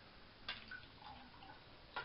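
Faint water sounds of a small wooden fishing plug being pulled through bathtub water, with a sharp tick about half a second in and another at the end.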